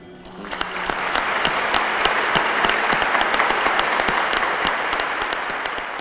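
Congregation applauding: many hands clapping together, starting about half a second in, holding steady, then easing off slightly near the end.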